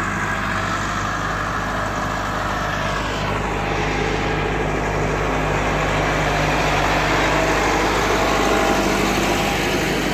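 Farm tractor's diesel engine running steadily as it pulls a laser land leveler, growing louder as it draws near and passes close by.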